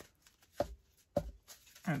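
Card pages of a small handmade book being handled and flexed, with a faint rustle and two soft knocks a little over half a second apart.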